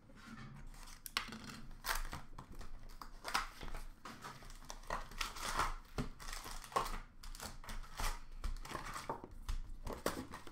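Cardboard box of Upper Deck hockey card packs being opened and its packs handled: an irregular run of short crinkles, rustles and tearing sounds from cardboard and pack wrappers.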